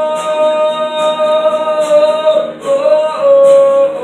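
Live male vocal with guitar: a long sung note held for about two and a half seconds, then a short note and another held note near the end.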